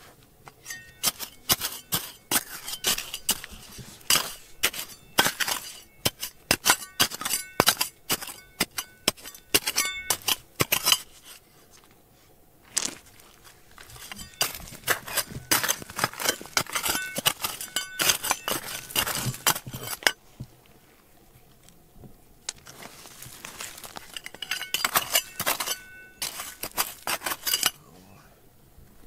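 A metal digging blade scraping and striking stony, gravelly soil: rapid clicks and scrapes of stones, with ringing metallic clinks. The digging comes in three bouts separated by short pauses.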